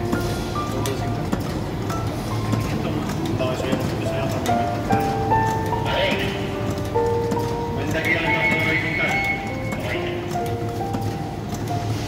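Savema friction feeder and conveyor belt running, a dense, rhythmic clatter of clicks and knocks as doypack pouches are fed one by one under an intermittent thermal transfer overprinter. A melody plays over it throughout.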